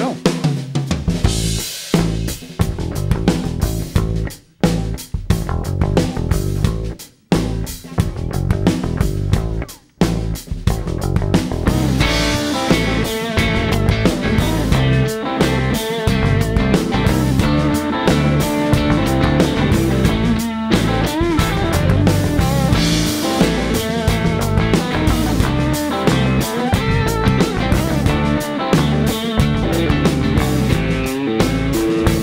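Live blues-rock band opening a song with a bass drum groove on the drum kit, broken by short pauses; about twelve seconds in the full band comes in, with electric guitar over the drums and bass.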